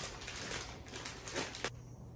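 Thin plastic candy bag crinkling and crackling in the hands as it is pulled open, in a string of short rustles that cut off abruptly near the end.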